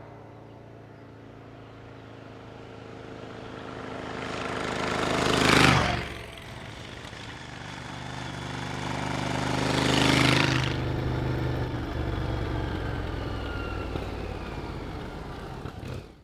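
Yamaha XV1000's 1000cc V-twin motorcycle engine passing by twice under riding. It swells to a peak about five and a half seconds in and falls off sharply, then comes close again near ten seconds and fades away slowly.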